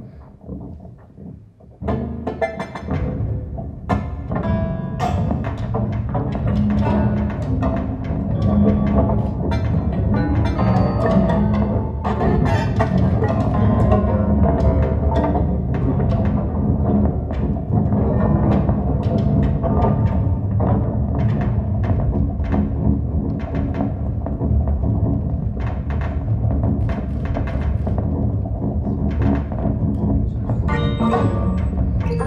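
Live experimental percussive music played by hand on a self-built instrument of upright tubes wired to an electronics box. After a short lull it swells about two seconds in into a dense, continuous web of knocks, clicks and pitched tones.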